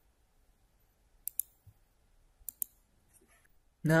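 Computer mouse button clicked twice, about a second apart. Each click is a quick pair of sharp ticks.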